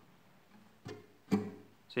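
Acoustic guitar strings struck in short muted strokes, the palm damping the strings while the fingers fan across them: the muted third stroke of a chacarera strum. A faint stroke comes a little before the middle, a stronger one just after it with a brief ring, and another right at the end.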